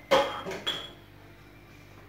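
Small ceramic cups clinking, three sharp ringing knocks within the first second.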